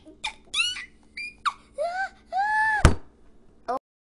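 A string of short, high-pitched voice-like cries, each rising and falling in pitch, with a sharp click about three-quarters of the way through; the sound cuts off suddenly just before the end.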